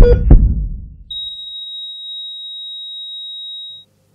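Heart-monitor sound effect: two heavy low heartbeat thumps about a third of a second apart, then about a second in a single steady high electronic tone held for nearly three seconds, like a monitor flatlining.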